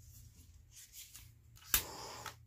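Handheld torch clicking on about three-quarters of the way in, followed by a short hiss of flame, over a faint low hum and light handling sounds.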